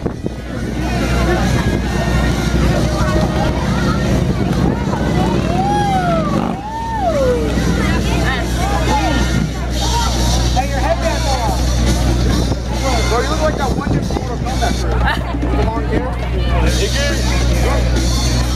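Crowd of onlookers chattering over music playing for the dancers, with a voice rising and falling in pitch about six seconds in.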